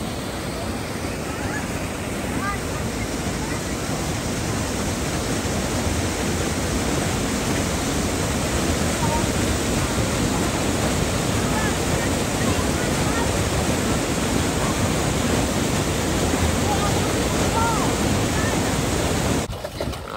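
Waterfall pouring through a narrow rock gorge: a steady, full rush of falling water that cuts off suddenly just before the end.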